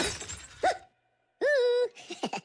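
Sound effect of glass cracking with a crash at the start, ringing away over most of a second. It is followed by a cartoon Minion voice: a short yelp, then after a brief silence a high held vocal note.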